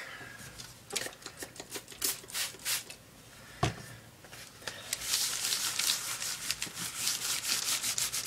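A paint-stained paper towel rubbed over a painted work surface to wipe it clean: scattered scuffs at first, with one thump a little past the middle, then fast, even back-and-forth rubbing from about five seconds in.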